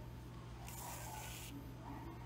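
Sewing thread drawn through grosgrain ribbon: one short hiss lasting under a second, about halfway in, over a faint steady low hum.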